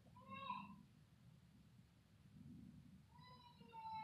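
Two faint high-pitched animal cries in a near-silent room: a short one that rises and falls about half a second in, and a longer one that slowly falls in pitch near the end.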